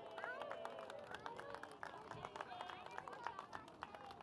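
Faint background chatter of children and other people outdoors, with scattered light clicks throughout.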